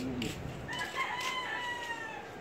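A rooster crowing once: one long call that starts about a second in, holds its pitch and falls away at the end. A couple of light knocks come through alongside it.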